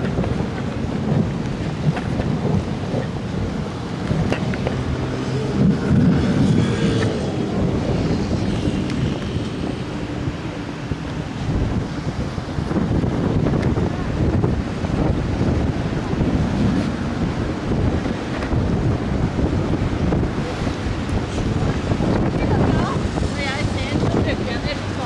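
Wind buffeting the microphone in a seaside thunderstorm: a steady low rumbling noise with gusts that rise and fall.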